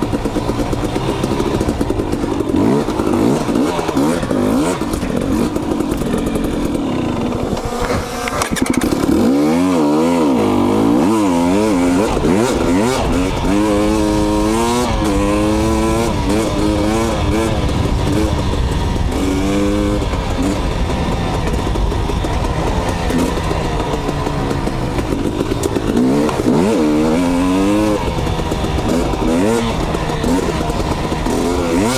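Two-stroke KTM dirt bike engines revving up and down on a desert trail ride. The pitch rises and falls over and over, most busily in the middle of the stretch and again near the end.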